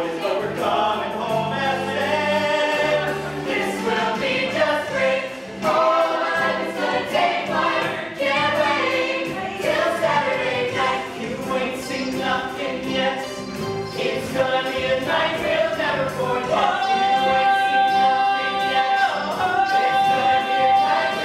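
Ensemble cast of a stage musical singing together in chorus, male and female voices, over steady low accompanying notes.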